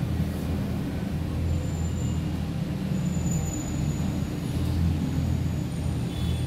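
A steady low hum and rumble, with a few faint, thin high tones about one and a half and three seconds in.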